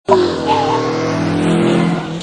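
Car engine held at high revs under load, steady and loud, its pitch easing slightly lower near the end.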